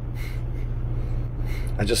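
Tour bus generator running constantly, a steady low hum and buzz. A man starts speaking near the end.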